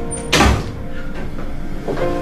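A single door thump, a sharp impact with a deep thud about a third of a second in, over background music with held notes.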